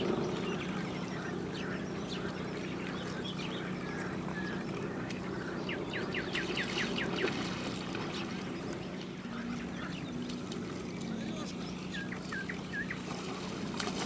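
A hooked silver carp splashing and thrashing at the surface close to shore while it is played on a spinning rod, over a steady low hum. A quick run of clicks about six seconds in.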